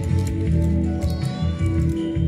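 Music with a steady beat plays, and from about a second in a Furby toy's high electronic chirping voice chatters over it.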